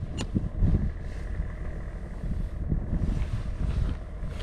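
Low steady drone of a passing boat's engine out on the water, mixed with wind rumbling on the microphone, with a sharp click just after the start.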